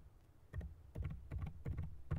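Typing on a computer keyboard: a quick run of separate keystrokes, starting about half a second in.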